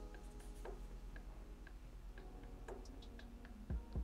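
Faint, regular ticking, about two ticks a second, over a low steady hum.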